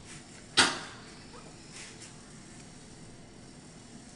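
A knife spreading cream cheese in a pie shell: one sharp clink of the knife against the pie dish about half a second in, then faint scraping.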